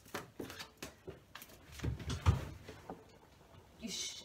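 A deck of tarot cards being shuffled by hand: a run of quick, light card clicks for the first second or so, then a dull low thump about two seconds in, the loudest sound.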